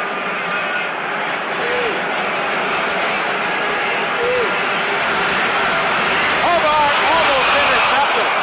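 Stadium crowd noise: a dense din of many voices with scattered shouts, swelling gradually toward the end as a pass play unfolds.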